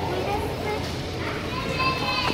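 Busy shop background: indistinct voices and children's chatter over a steady murmur, with a child's voice starting up at the very end.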